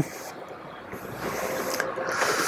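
Volkswagen ID. Buzz power tailgate motor lifting the rear hatch open, a steady mechanical whirr that grows louder as it goes.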